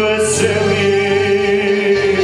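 A male singer holds one long sevdalinka note with vibrato through a microphone and PA, over a steady accordion accompaniment.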